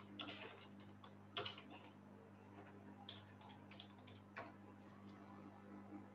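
Faint computer-keyboard keystrokes, a handful of scattered clicks, over a steady low electrical hum.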